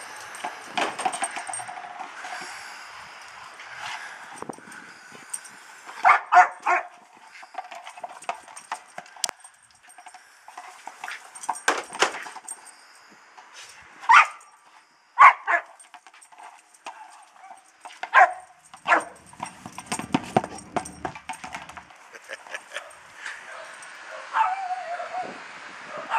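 A dog barking: loud single barks and quick pairs, several seconds apart.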